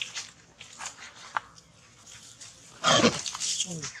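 Faint scattered rustles and clicks in dry leaf litter as a macaque moves about with a baby, then about three seconds in a loud, short vocal cry whose pitch falls.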